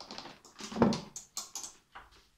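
A run of clicks and knocks from hard plastic kitchen items being handled at a personal blender on a kitchen counter, with a louder knock a little under a second in.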